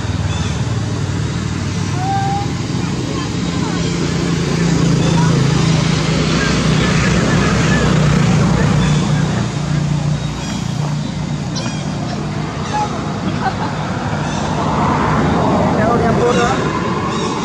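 A motor vehicle engine running steadily, at its loudest in the middle and then easing off, with indistinct voices around it.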